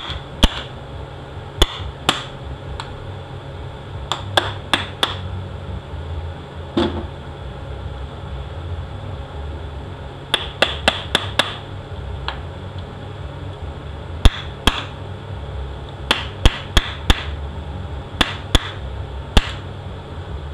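Hammer tapping a cap into an aluminium CD4E transmission case while a C-clamp presses it in: sharp metallic taps in irregular clusters of a few at a time. A steady low hum runs underneath.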